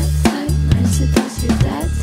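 Acoustic drum kit played along with the song's backing track: bass drum and snare hits over deep synth bass notes, with a run of quicker hits near the end.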